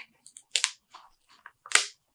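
Glossy printed pages of a thick hardcover comic omnibus being turned by hand, with two short crackly rustles about half a second and a second and a half in. The solid-black pages are sticking together and peel apart, lifting some ink.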